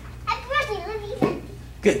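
A young child's high voice speaking briefly. There is a single short knock about a second and a quarter in.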